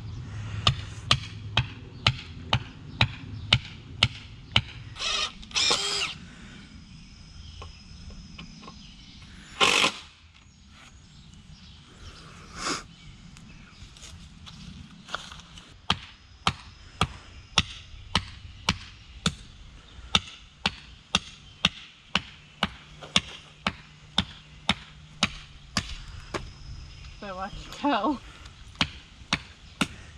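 Hammer striking the top of a wooden stake, driving it into soft dirt: steady blows about two a second, easing off in the middle and picking up again for the second half.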